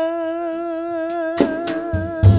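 A female jazz singer holds one long wordless note with gentle vibrato. About one and a half seconds in, the accompanying band comes in with a sharp struck accent.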